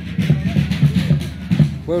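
Band music with a steady drum beat, from a village banda típica.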